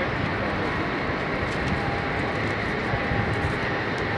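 Steady engine drone with no breaks, from passing traffic or an aircraft overhead.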